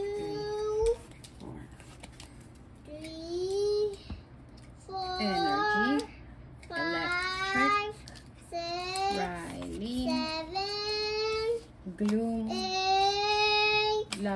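A young child singing wordlessly, in a series of long held high notes with short breaks between them.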